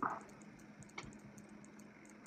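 Quiet room tone with a faint steady low hum and faint rapid high ticking, broken by a single soft click about halfway through.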